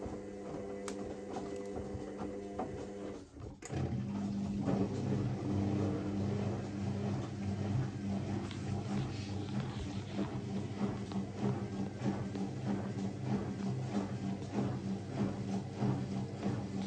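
Zanussi ZWT71401WA front-loading washing machine rebalancing an unbalanced load of two dripping-wet towels on a spin-only cycle. The drum motor hums as the drum turns, stops briefly about three and a half seconds in, then starts again and runs on with a steady hum and a quick regular patter as it tries to spread the load.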